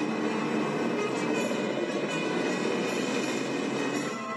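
Electronic sci-fi vehicle sound effect from a film soundtrack: a steady, dense mechanical noise with faint held tones in it, for a tank under a hovering Recognizer.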